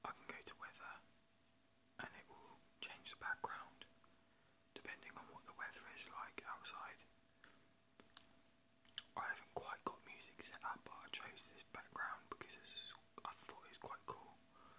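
A man whispering in short phrases, too quietly for the words to come through, so as not to wake a sleeping household. A faint steady hum runs underneath.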